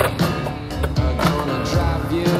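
Skateboard wheels rolling and clacking on a concrete bowl and its coping, with music playing over it.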